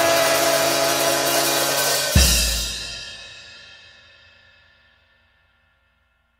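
Free-jazz drums, tenor saxophone and trombone holding a loud closing chord over a wash of cymbals, ended by a final crash with bass drum about two seconds in. The cymbal then rings out and fades away to silence: the end of the piece.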